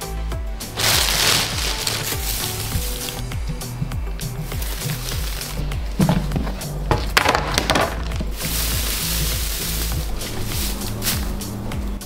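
Background music over bursts of crinkling plastic bag and dry hay rustling as loose hay is pulled from its bag to refill the hay pile, loudest about a second in and again near the end.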